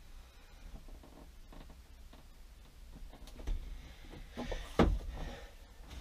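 Quiet room with faint handling noises as a hand presses and holds an adhesive broom holder against the wall, and a brief louder bump near the end.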